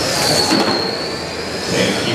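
High-pitched whine of electric RC race trucks' 21.5-turn brushless motors and gearing as they run laps of a carpet oval, over a hiss of tyres. The whine dips in pitch about half a second in, then slowly climbs again.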